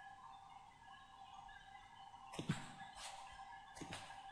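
Computer mouse clicking two or three times near the end, over a faint steady tone and hiss of background noise.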